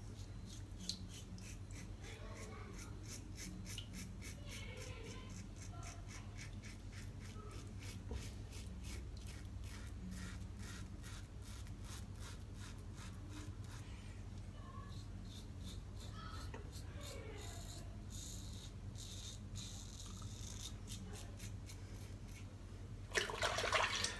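Safety razor scraping through lathered stubble on a cross-the-grain pass: long runs of quick, faint, crackling scrapes, stroke after stroke, over a low steady hum.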